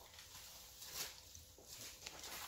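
Faint rustling of brown packing paper and a plastic bag being handled while a small part is unwrapped, two soft rustles about a second apart.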